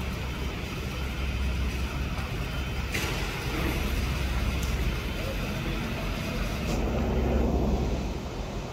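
Steady low rumble of background noise with indistinct voices, and three short clicks.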